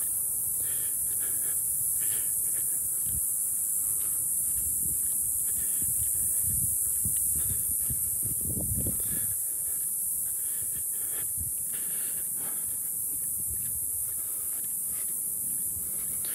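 A steady high-pitched insect drone from the coastal scrub, with soft footsteps on a sandy trail and now and then a low wind rumble on the microphone.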